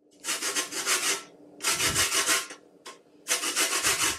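A lemon rubbed up and down a metal box grater, zesting its peel: three scraping strokes of just under a second each, with a short scrape between the second and third.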